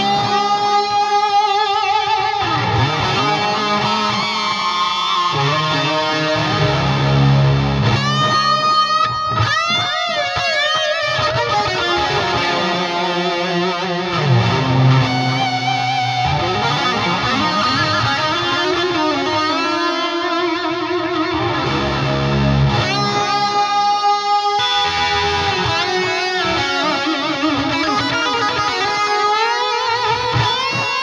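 Electric guitar played through an Eventide H9 effects pedal set to preset 85, a run of notes with several quick pitch glides.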